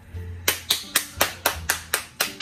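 Hands clapping quickly and evenly, about five claps a second, starting about half a second in.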